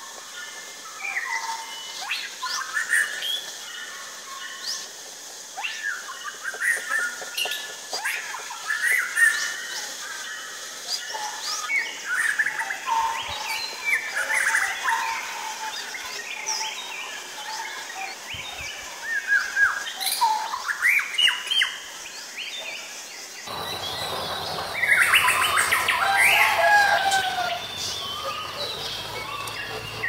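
White-rumped shama singing: a varied, continuous run of clear whistles, quick sweeps and chirps. About three-quarters of the way through, the background changes abruptly to a louder, busier stretch with a low hum.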